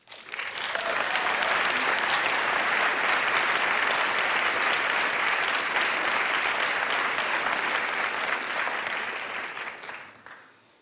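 Large auditorium audience applauding: the clapping swells up quickly, holds steady, and dies away near the end.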